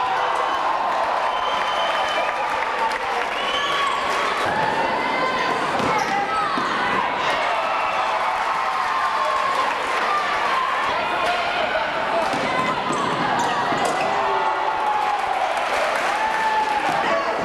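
Live basketball game sound in a school gym: the ball bouncing on the hardwood floor and sneakers squeaking, under a constant crowd of overlapping voices shouting and chattering.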